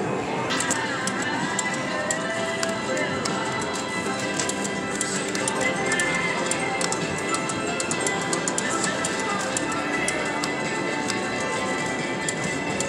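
Casino floor ambience: slot machines playing overlapping electronic tunes and chimes, over background voices and frequent short clicks.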